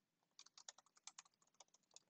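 Faint typing on a computer keyboard: a quick run of keystrokes that starts about half a second in.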